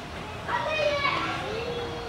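Children's voices calling out and chattering, high-pitched with no clear words, over a steady murmur of background crowd noise.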